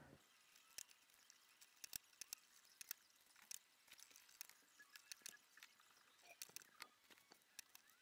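Near silence with faint, irregular sharp clicks, several a second: a SUNKKO 737G battery spot welder firing pulses through nickel strip onto 18650 cells.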